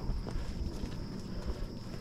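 Footsteps on a grassy dirt footpath, with a steady high-pitched drone of insects running underneath.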